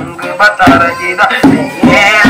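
A man singing through a handheld megaphone, with hand-drum beats struck underneath his voice.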